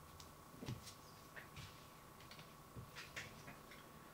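Near silence: faint room tone with a steady low hum and a few soft, scattered clicks.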